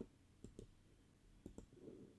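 Faint computer clicks, two quick pairs of them about half a second in and about a second and a half in, as the wallet address is copied and the browser tab is changed; otherwise near silence.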